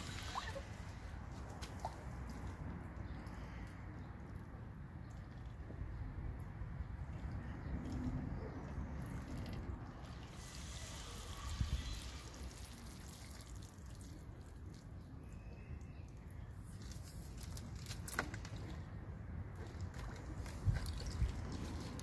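Water trickling and splashing from a small plastic toy watering can onto soil, with sloshing as it is dipped in a tub of water, over a steady low rumble.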